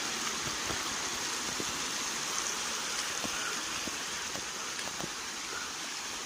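Water rushing over the rocks of a shallow river and a small waterfall: a steady, even hiss of flowing water.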